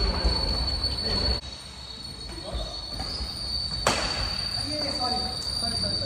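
Badminton play in a large hall: a single sharp crack of a racket hitting the shuttlecock about four seconds in, with a few short squeaks just after, over a steady high-pitched whine.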